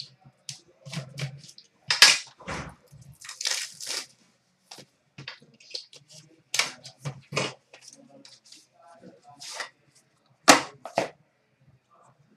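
Hockey card pack being slit open with a small blade and its wrapper pulled apart, then the cards slid out: a string of sharp crackles, scrapes and clicks, with a longer tearing rustle about three to four seconds in. The loudest crackles come about two seconds in and near the end.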